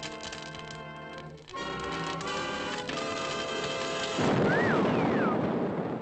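Cartoon orchestral score with a run of rapid sharp hits over it. About four seconds in comes a loud crash or boom sound effect with whistling pitch glides, which then fades away.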